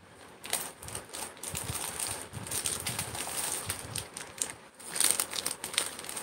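Clear plastic jewellery packets crinkling and rustling as they are handled, in irregular crackles, with a louder burst about five seconds in.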